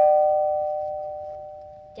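Two-tone ding-dong doorbell chime ringing out, its higher and lower notes sounding together and slowly fading away.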